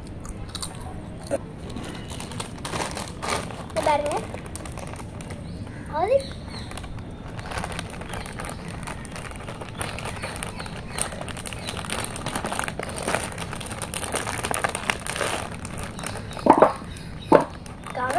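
Potato chips crunched while eating, then a foil Lay's crisp packet crinkling and rustling as it is handled. A few short children's voice sounds come through, the loudest two near the end.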